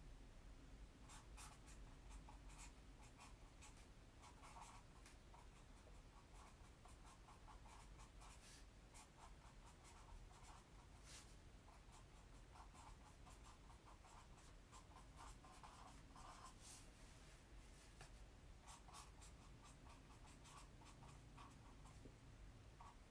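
Faint scratching of a colour pen drawing on paper, in short irregular strokes, over a low steady room hum.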